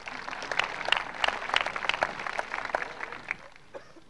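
Audience applause, heaviest in the first two seconds, then thinning to scattered claps and dying away near the end.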